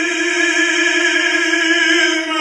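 A male singer's voice in operatic style holding one long note, with piano and string accompaniment.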